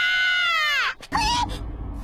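A girl's high-pitched cartoon scream whose pitch slides steeply down and breaks off about a second in, followed by a short cry over a low rumble.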